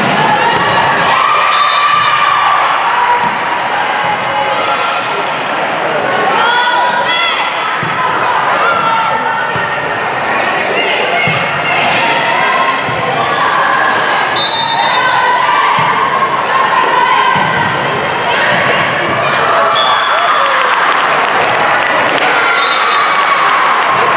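Echoing volleyball gym: players' voices calling and shouting over spectator chatter, with the sharp smack of the ball being hit several times during a rally.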